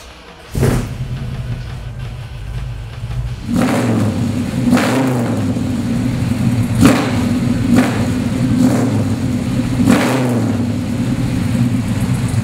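A 1967 Chevrolet Chevelle SS396's 396 cubic-inch big-block V8 starting about half a second in and then idling through its new dual exhaust. It gets louder about three and a half seconds in, with short blips of the throttle about once a second.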